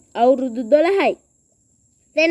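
A voice narrating in Sinhala for about a second, with a faint steady high-pitched whine underneath.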